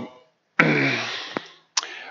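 A man's voice making one drawn-out, breathy hesitation sound ('uhh') that falls in pitch, followed by a short click.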